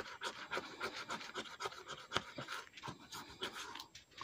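A coin scratching the coating off a paper lottery scratch-off ticket in quick, repeated short strokes.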